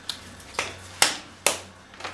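Four sharp smacks about half a second apart, the later two loudest.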